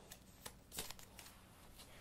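Faint rustle and a few light ticks of a small paper trivia card being pulled from the middle of a deck.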